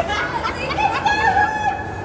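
A person's long, high-pitched held cry, a little wavering, that lasts about a second in the middle, over the steady rushing bubble of hot-tub jets.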